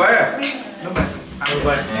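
Wine glasses clinking together in a toast, a few sharp glassy clinks over men's voices.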